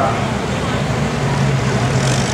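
Pickup truck engine idling with a steady low hum as the truck backs slowly up to the pulling sled.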